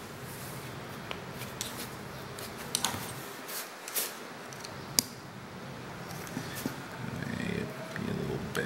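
A few light metallic clicks and scrapes of a hand pick working against the metal block of a small rotary table as it tries to hook out the worm's end-play bushing; the sharpest click comes about five seconds in.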